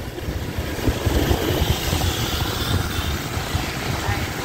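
Riding pillion on a moving motorbike through city traffic: a steady low rumble of wind buffeting the microphone, mixed with the bike's engine and tyre noise and the surrounding scooters.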